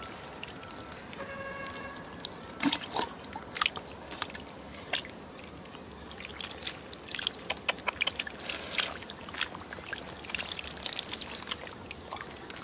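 Hands squelching and scooping through shallow muddy water, with irregular wet splashes and drips that come thicker in the last couple of seconds.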